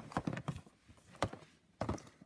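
Cardboard Funko Pop boxes with clear plastic windows being handled and set down: a scatter of light taps and knocks, with one sharper knock just after a second in.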